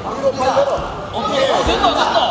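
Several voices calling out and overlapping in a large, echoing sports hall, with a short dull thump about three-quarters of the way through.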